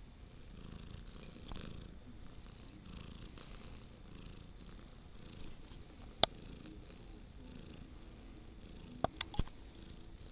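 Domestic cat purring steadily close to the microphone. A sharp click sounds about six seconds in, and three more come in quick succession near the end.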